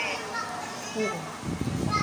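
Quiet talking with other voices in the background. About one and a half seconds in, a low rumbling noise comes in.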